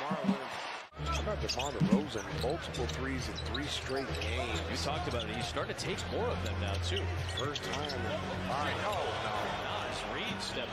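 Basketball broadcast game sound: a ball being dribbled on the court over a steady arena crowd hum, with commentators talking faintly. The sound drops out briefly just before one second in.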